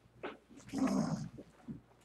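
A person's short vocal sound, about half a second long, near the middle, with a fainter one just before it and a brief blip after it.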